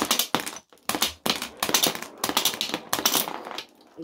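Battle B-Daman toy shooter firing glass marbles, followed by a rapid run of sharp clicks and clatter for about three and a half seconds as the marbles hit plastic bricks and rails and bounce and roll on a plastic tray.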